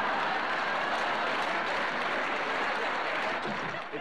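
Audience applauding after a punchline, a dense steady clapping that dies away just before the end.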